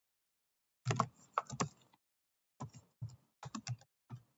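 Typing on a computer keyboard: a quick run of keystrokes starts about a second in, then after a short pause a second run of keystrokes, as a terminal command is typed.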